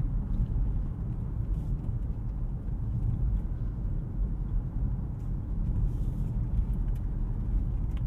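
Steady low rumble of tyre and road noise heard inside the cabin of a 2024 Nissan Altima SL AWD rolling slowly over rough pavement, with its engine running quietly underneath.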